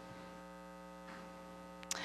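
Faint, steady electrical mains hum with a stack of even pitched tones, from the sound and recording system. There is a short click near the end.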